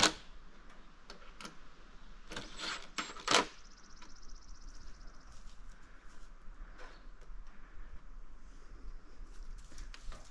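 Scattered metallic clicks and scrapes of a hand tool tightening the mounting bolts of a solar street light's bracket, the loudest knock about three seconds in.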